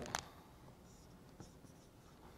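Dry-erase marker faintly scratching and squeaking on a whiteboard as a circle is drawn, with a couple of light ticks.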